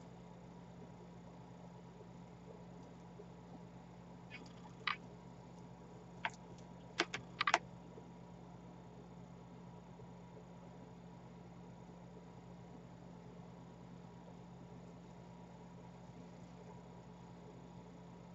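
Quiet steady hum with a handful of small sharp clicks from about five to seven and a half seconds in: beads and needle knocking together as a bead-embroidered pendant is handled and stitched.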